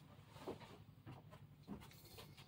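Near silence, with a few faint, scattered small knocks and rustles from items being handled.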